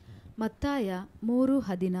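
Only speech: a man's voice speaking, starting about half a second in after a brief pause.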